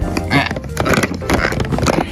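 Large hollow plastic building blocks knocking and clattering against each other as they are pushed and pulled off a stack, over background music.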